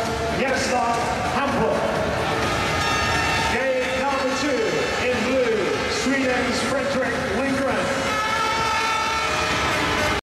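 Speedway bikes' single-cylinder engines running and being revved on the start line, their pitch rising and falling, under a stadium public-address voice and a crowd.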